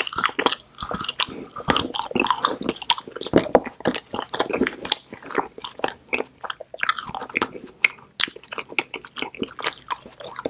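Close-miked chewing of a bitten-off piece of pink edible chocolate soap bar, with a bite near the start and many wet mouth clicks and smacks in an irregular run.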